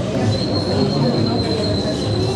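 A steady high-pitched whistling tone starts just after the beginning and holds on. Underneath it is a busy background din.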